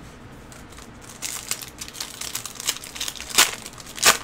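Foil trading-card pack wrapper crinkling as it is handled and torn open: irregular sharp crackles starting about a second in, the loudest near the end.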